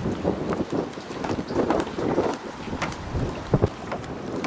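Wind buffeting the microphone in irregular gusts, with a couple of sharp knocks about three and a half seconds in.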